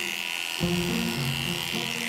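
Electric dog grooming clippers running with a steady high whine as they shave through a dog's matted coat.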